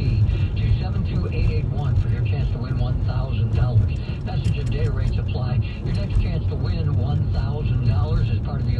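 A voice talking on the car radio, heard over the steady low rumble of road and engine noise inside a moving car.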